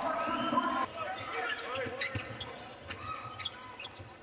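Basketball dribbled on a hardwood court, with repeated bounces and high sneaker squeaks over arena crowd murmur.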